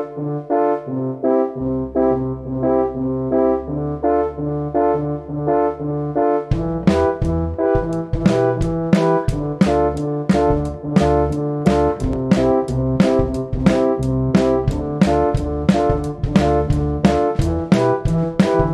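A band playing a quick, poppy groove in a 1950s Motown style: a keyboard repeats chords in an even rhythm, bass guitar comes in under it about two seconds in, and a drum kit joins with a steady beat a few seconds later.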